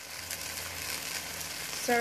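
Squid and vegetables sautéing in a stainless steel pot, sizzling steadily with faint scattered crackles.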